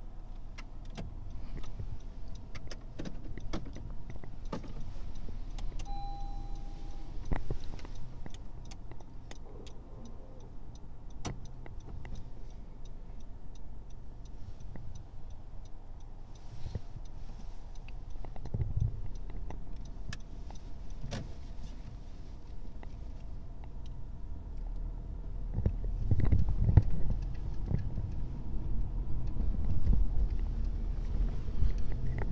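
Inside a Honda Civic pulling away and driving along a street: a steady low engine and road rumble with scattered small clicks and rattles, and a short beep about six seconds in. The rumble grows louder over the last few seconds as the car picks up speed.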